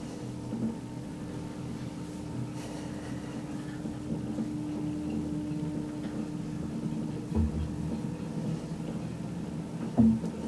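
Lift car travelling up or down its shaft: a steady motor hum with a constant tone, and a low thump about seven seconds in.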